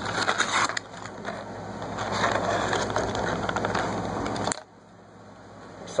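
Cardboard-and-plastic blister packaging of a diecast toy car being torn and pried open, a crackly, crinkling sound with many small snaps that stops abruptly about four and a half seconds in.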